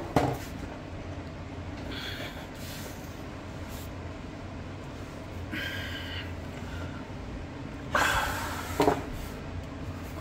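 Steady low hum, then about eight seconds in a bundle of USB and HDMI cables with a wall charger slid across a desk: a short scraping rustle ending in a light knock.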